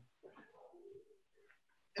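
Near silence: video-call room tone, with one faint, brief low sound in the first second.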